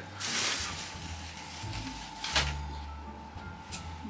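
A plastic bag rustling briefly near the start, then a single sharp knock a little past halfway, over faint background music.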